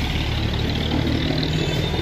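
Road traffic: vehicle engines running steadily close by, a continuous low drone.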